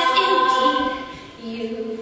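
Girls' a cappella ensemble holding a sung chord that fades away about a second in; a single lower voice then comes in near the end.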